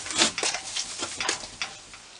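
Percheron draft horse's hooves shifting and stepping at the trailer ramp: a few short, irregular knocks and scuffs, the sharpest about a quarter second in.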